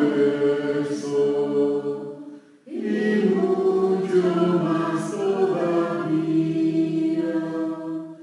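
A choir singing a slow liturgical song in two long phrases, with a brief pause between them about two and a half seconds in.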